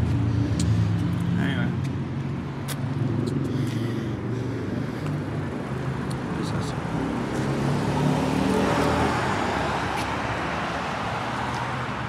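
Road traffic on a busy road nearby: a steady wash of engine and tyre noise, swelling about eight seconds in as a vehicle goes by.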